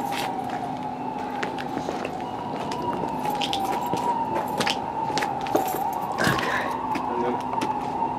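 A steady high whine that wavers slightly in pitch, with a lower steady hum beneath it and scattered light clicks.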